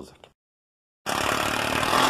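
Power driver running a screw into wood. It starts abruptly about a second in and runs loud and steady.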